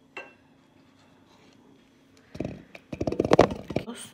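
A spoon and spatula knocking and scraping against a bowl as thick paste is scraped into it: one light click early, then a quick, loud run of clicks and scrapes through the second half.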